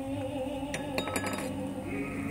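Light clinks, one and then a quick cluster about a second in, over held orchestra notes.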